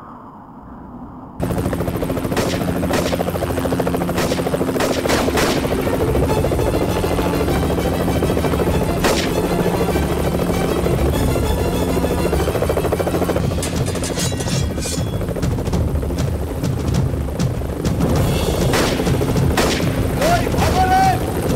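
Loud action-film background score with sustained low notes and pounding percussion, starting about a second and a half in, with sharp hits scattered through it.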